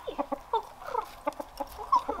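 Rooster clucking in a run of short, quick calls, the loudest one near the end.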